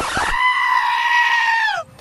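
One long, high cry, held steady for over a second and then falling in pitch as it stops.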